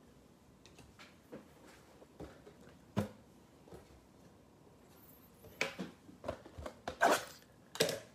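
Light handling sounds of trading cards and a cardboard card box on a tabletop: scattered soft clicks and taps, one sharper knock about three seconds in, and a cluster of clicks and rustles near the end as the plastic-wrapped mega box is picked up.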